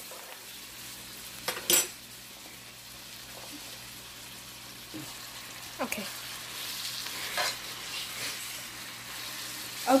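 Pork chops and onions sizzling steadily in butter in an electric skillet, with a spatula scraping and turning them. The spatula clacks once against the pan near two seconds in.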